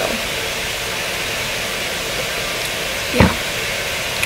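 Steady hiss of background noise, with one brief knock a little after three seconds in.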